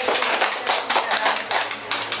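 A small audience clapping: many quick, irregular claps from several people.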